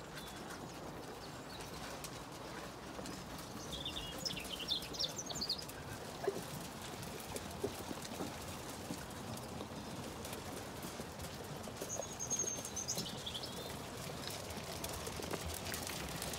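Zwartbles sheep eating sheep nuts at a metal trough: a steady patter of small crunching and jostling clicks. A small bird chirps briefly about four seconds in and again about twelve seconds in.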